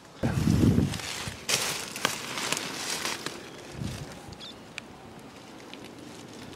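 Handling noise as the camera is moved: a low rumble near the start, then rustling and small clicks, and a soft thud about four seconds in. Quieter outdoor background follows.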